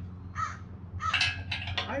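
Crows cawing several times over a steady low hum, with a quick run of calls in the second half.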